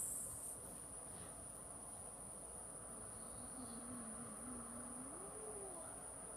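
Insects singing outdoors, a steady high-pitched trill that does not let up, typical of crickets in late-summer grass.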